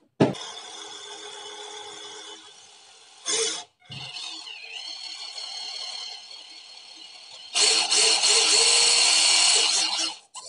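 A small electric motor whirring steadily, with a sharp click at the start. There is a short burst about three seconds in, and it grows clearly louder for the last two seconds.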